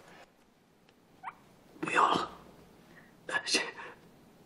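Breathy, unworded vocal sounds from a distressed person: a brief rising whimper about a second in, then two short gasping sobs.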